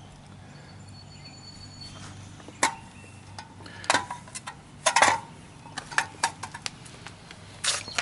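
A run of a dozen or so irregular sharp clicks and light knocks starting a few seconds in, loudest around the middle, over a faint steady low hum.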